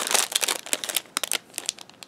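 Small clear plastic packet crinkling as it is handled in the hands, a run of irregular crackles that thins out after about a second.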